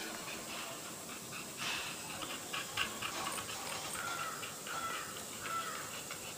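A dog panting, with a few short high-pitched calls in the last two seconds.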